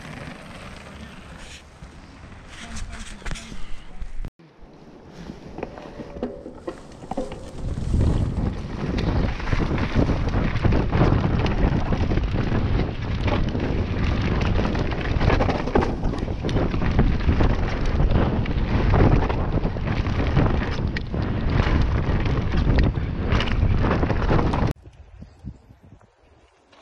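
Mountain bike ridden fast down a dirt trail, heard from a handlebar-mounted camera: wind buffeting the microphone over the rumble and rattle of tyres and bike, loud and steady for most of the time. It cuts off suddenly near the end.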